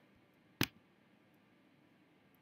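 A single sharp computer mouse click, a little over half a second in, over quiet room tone.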